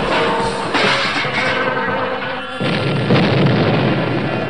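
Cartoon crash and explosion sound effects over background music: a loud burst of noise about a second in and another, the loudest, near two and a half seconds in, each dying away slowly.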